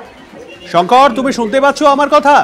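A person's voice speaking, starting under a second in after a brief lull.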